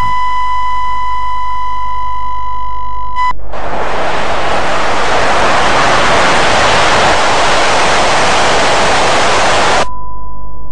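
A steady high-pitched test-pattern tone sounds for about three seconds, then cuts off and gives way to loud, hissing TV static. Just before the end, the static stops abruptly and the steady tone comes back.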